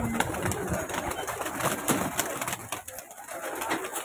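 A loft full of domestic pigeons: many birds cooing at once, with irregular flutters and claps of wings as birds flap on the perches.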